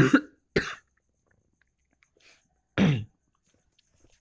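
A person coughing and clearing the throat in three short bursts: one tailing off at the start, a brief one just after half a second, and a harsher one about three seconds in.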